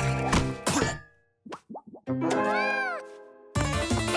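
Cartoon music score that breaks off about a second in, then a few quick plop sound effects and an arching swoop that rises and falls and fades, before the music starts up again near the end.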